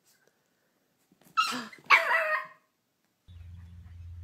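Small dog barking twice, two sharp calls about half a second apart. A steady low hum follows near the end.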